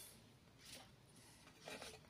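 Near silence: room tone, with two faint brief handling sounds, about a second apart, as cables are plugged into the back of a power amplifier.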